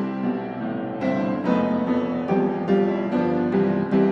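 Background piano music: single notes struck one after another in a slow, gentle melody.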